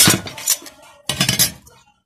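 Ring ferrite magnet from a microwave magnetron snapping onto and knocking against the magnetron's sheet-steel housing and plate: sharp metallic clinks at the start, again about half a second in, and a louder clattering cluster a little after a second.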